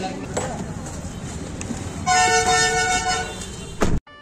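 A horn toots once, a steady tone lasting about a second, about halfway through, over low background noise. A quick sweeping whoosh follows right at the end.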